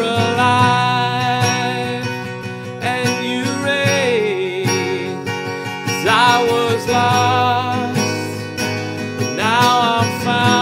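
A man singing a slow worship song while strumming an acoustic guitar, holding long notes on each line.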